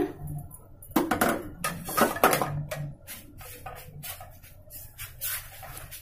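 Light kitchen handling noises over a glass mixing bowl: a few sharp clicks and knocks, the loudest about one and two seconds in, then scattered fainter ticks.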